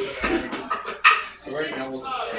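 Indistinct talk of people in a room, with a sharp, loud vocal burst about a second in.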